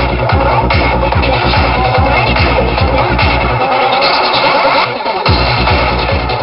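Psytrance played loud, with a fast, steady kick drum and rolling bassline. Just past halfway the kick and bass drop out for about a second and a half, leaving the upper synth layers, then come back in.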